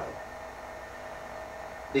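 Pause in speech: a steady low hum with faint hiss.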